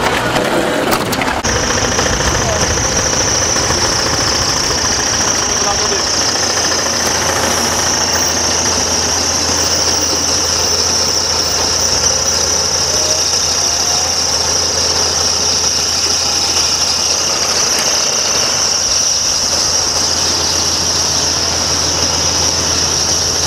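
A vehicle engine idling with a steady low hum, and a constant high-pitched whine over it.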